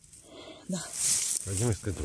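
A woman speaking a couple of short words, with a brief rustling hiss about a second in as her hands work among dry grass and mushrooms.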